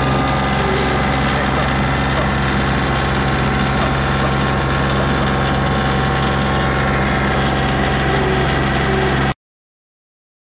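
Kioti CK2510 compact tractor's three-cylinder diesel engine running steadily at a constant speed. The sound cuts off suddenly a little over nine seconds in.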